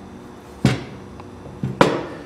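Three sharp knocks from a Mazda Miata gas pedal assembly being handled. One comes a little over half a second in, then two close together near the end, the last the loudest.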